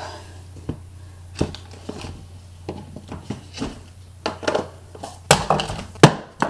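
Small objects being handled and moved about on a shelf: scattered light clicks, knocks and rustles, then a louder clatter near the end as a pair of spare glasses drops. A low steady hum runs underneath.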